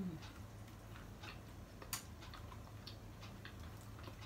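Faint scattered clicks and crackles of hands picking apart boiled seafood shells, with one sharper click about two seconds in, over a low steady hum.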